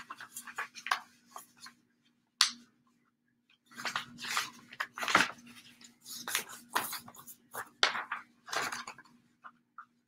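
A sheet of paper being folded and creased by hand: short spells of rustling with pauses between, a sharp crackle about two and a half seconds in, over a faint steady hum.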